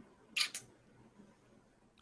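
A short computer mouse click about half a second in.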